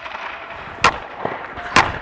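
Two sharp cracks of hockey pucks being shot at a goaltender on ice, about a second apart, over a steady hiss.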